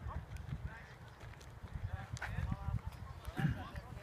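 Voices calling out across a baseball field between pitches, with a few faint sharp clicks.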